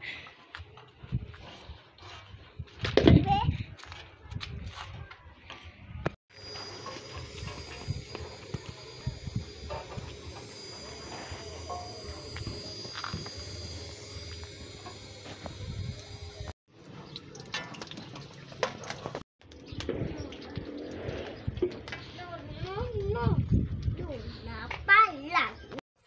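Hot oil sizzling steadily in a frying pan as empanadas fry over an outdoor wood fire, with short bursts of voices near the start and near the end.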